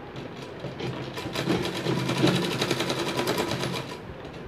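A black domestic sewing machine stitching through cloth. Slow needle strokes quicken about a second in into a fast, even run of stitching, which stops just before the end.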